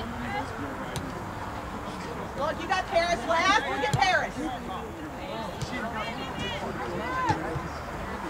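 Indistinct voices calling out and talking on a soccer field, over steady outdoor background noise. The voices are loudest about three to four seconds in and come again near the end.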